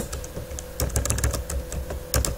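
Typing on a computer keyboard: a short, irregular run of key clicks as a word is entered.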